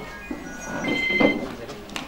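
A short electronic melody of clear, steady tones stepping from note to note, high-pitched and bell-like, over faint murmuring voices.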